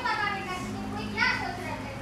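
High-pitched children's voices, calling out or chattering, with the pitch rising and falling, at the start and again about a second in.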